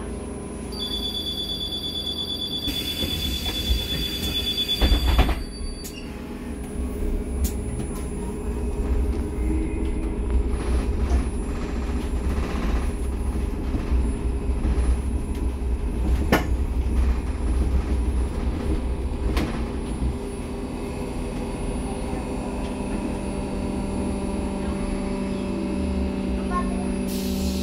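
Inside an SOR NS 12 electric city bus: a steady high warning tone sounds for a few seconds while the doors close with a hiss, ending in a thump about five seconds in. The bus then pulls away and runs on electric drive, with a steady low hum and road rumble and an occasional rattle or click.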